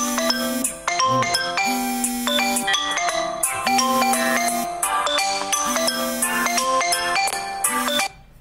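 A mobile phone ringtone: a melodic electronic tune of clear, marimba-like notes repeating over and over, cutting off suddenly at the end.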